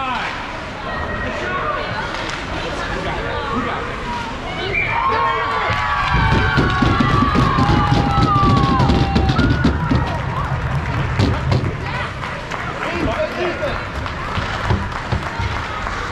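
Cheering for a goal at an ice hockey rink: high-pitched shouts and squeals rise about four seconds in, joined from about six to ten seconds by loud, rapid banging.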